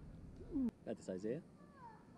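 Short high-pitched shouts from spectators in a gym, falling in pitch: one cry about half a second in and a quick cluster of calls around a second in, as a free-throw shot comes down. A single sharp knock comes between them.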